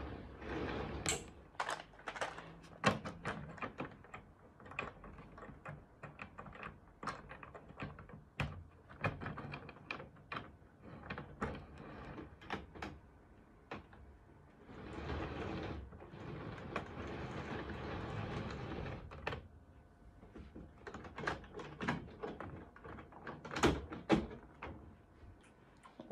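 Plastic OO-gauge model locomotives being handled and set on the track: a scatter of light clicks and knocks from bodies and wheels meeting the rails. In the middle there are a few seconds of steady whirring noise.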